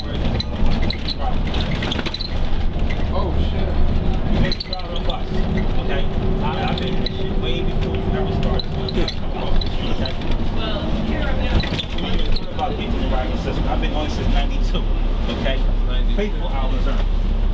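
Cabin sound of a New Flyer D40LF transit bus under way, its Cummins ISL diesel engine and Allison B-400R automatic transmission running with steady road rumble. A steady tone holds for a few seconds midway, under indistinct talk.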